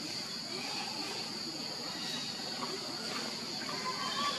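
Steady, high-pitched drone of insects, even and unbroken, over a faint murmur of outdoor background noise.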